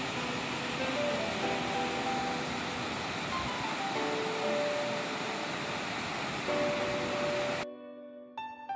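Rushing water of a shallow, rocky mountain river running over stones, with soft background music laid over it. Near the end the water sound cuts off abruptly and only piano music remains.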